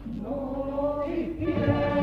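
Male comparsa chorus of the Cádiz carnival singing in harmony: the voices come in softly after a brief lull and swell into long held chords near the end.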